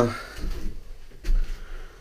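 A man's spoken phrase trails off at the very start, followed by a pause filled with a few short, faint handling noises and a low rumble.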